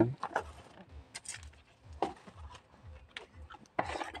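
Faint handling noise from a smartphone being held and switched on: a few scattered light taps and clicks over a quiet room.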